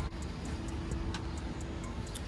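Low, steady rumble of road traffic from a nearby city street, with no single event standing out.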